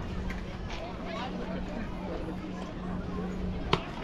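A pitched ball smacks once into the catcher's mitt near the end, a single sharp pop. Under it are faint, distant voices from players and spectators and a low steady hum.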